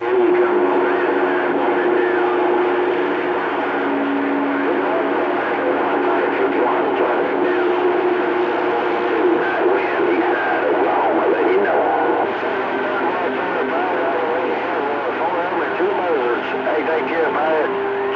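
CB radio receiving on channel 28: several distant stations coming in at once over skip, their voices talking over one another and garbled in the static, with a steady low tone running under them. The band conditions are fading in and out.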